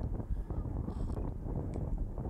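Wind buffeting the microphone of an action camera on a track bike ridden at speed, a steady low rush of noise.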